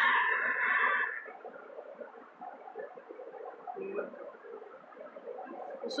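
A high, drawn-out cry lasting about a second, then faint steady background noise with a brief low sound about four seconds in.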